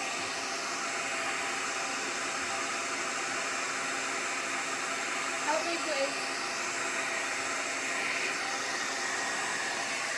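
Handheld hair dryer running steadily, its airflow pushing wet acrylic paint across a board in the blow-out step of a Dutch pour.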